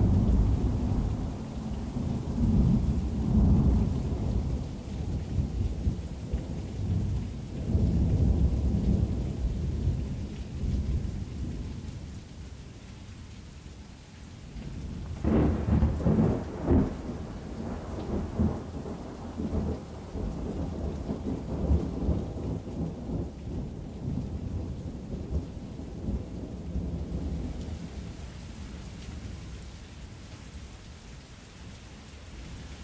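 Thunderstorm ambience: steady rain with long rolls of deep, rumbling thunder that swell and ebb, a sharp crackling thunderclap about halfway through, and the rumble fading toward the end.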